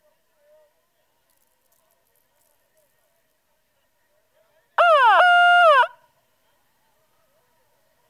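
A single loud pitched call about a second long, about five seconds in: a quick rising-and-falling note, then a held note that drops away at the end.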